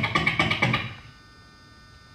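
Beatboxer's fast run of clicking percussive mouth sounds, about a dozen a second, that stops about a second in.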